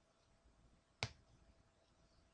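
Near silence: faint room tone, broken once by a single sharp click about a second in.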